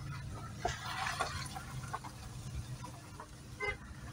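A car's engine running low and steady as it creeps along a rough dirt track, heard from inside the cabin, with a few faint, short sounds over it.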